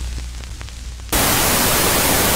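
A low hum with faint clicks, then about a second in a sudden loud burst of steady white-noise static that cuts in abruptly.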